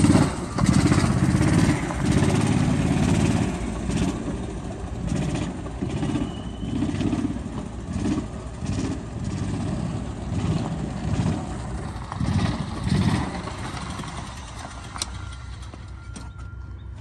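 Gas engine of an E-Z-GO MPT1200 utility vehicle running as it drives, its note rising and falling in repeated surges with the throttle. The engine sound grows quieter over the last few seconds.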